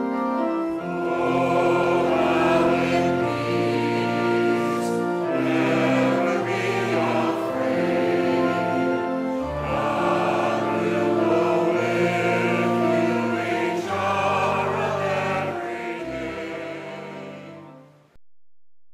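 Choir singing with organ accompaniment in held chords, fading out over the last couple of seconds.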